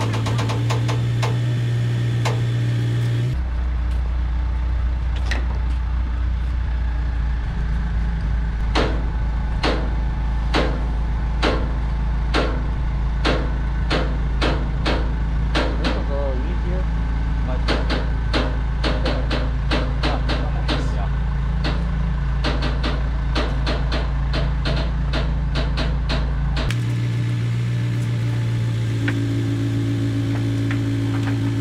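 Telehandler engine running steadily as it lifts a large framed wall. Its note goes deeper a few seconds in and comes back near the end, and through the middle there are many sharp knocks and clacks.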